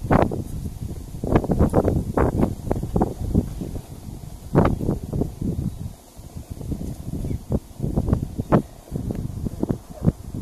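Wind buffeting the microphone in irregular, loud gusts that come and go every second or so.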